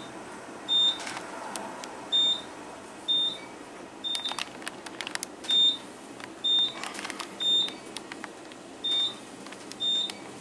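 Otis traction elevator cab sounding a short, high electronic beep about once a second while it travels, the floor-passing tone counting off the floors. A steady hum of the cab lies under the beeps, with a few faint clicks midway.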